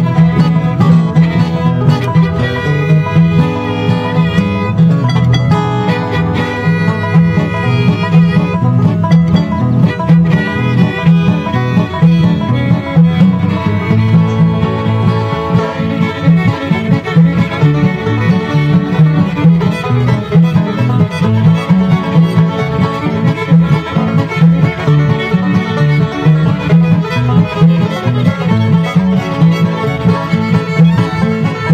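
Live bluegrass band playing an instrumental break with no singing: fiddle, banjo, acoustic guitar and upright bass together, the fiddle carrying the melody in the first several seconds.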